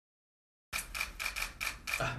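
Silence, then a rapid, regular ticking, about five ticks a second, starting a little under a second in.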